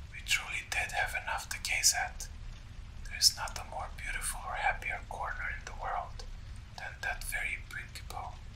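A person whispering in three stretches of speech, over a steady low rumble from a background fire ambience.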